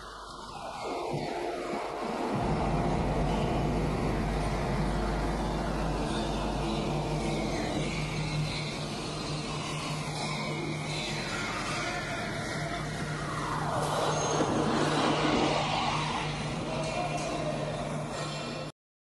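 Scania 540S lorry's engine running steadily at low revs while the truck and trailer reverse slowly, heard from a camera mounted on the truck's side. A louder rushing swell comes through about two-thirds of the way in.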